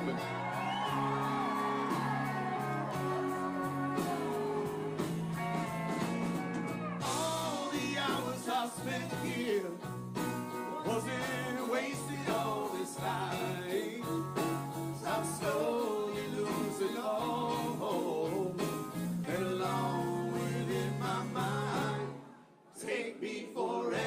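A live country-rock band playing, with two male voices singing over the instruments.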